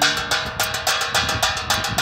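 Wind-spun bird scarer: a metal strip on the turning fan shaft strikes an aluminium pan over and over, a rapid, even clanging of several strikes a second with a metallic ring.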